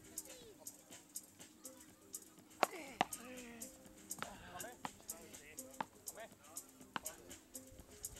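Beach tennis paddles popping against the ball in a rally, a string of sharp, irregularly spaced hits, with faint players' voices in the background.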